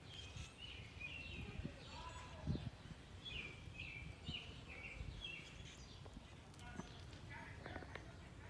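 A run of faint, short high chirps, each falling slightly, two or three a second, stopping about six seconds in, over quiet outdoor background. A single soft thump about two and a half seconds in is the loudest sound.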